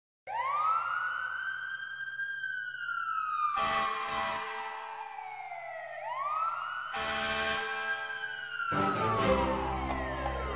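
A siren wailing in two slow rise-and-fall sweeps, with music coming in a few seconds in and growing fuller near the end.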